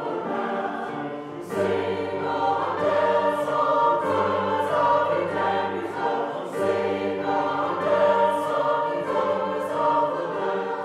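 A church chancel choir singing an anthem, with held sung chords and the words' consonants coming through.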